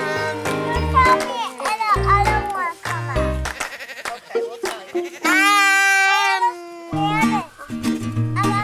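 Background acoustic music, with goats bleating over it; the longest bleat is held for about a second, about five seconds in.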